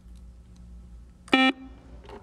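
Quiz-show contestant buzzer sounding once, a short electronic tone of about a fifth of a second, a little past halfway through, as a player buzzes in to answer.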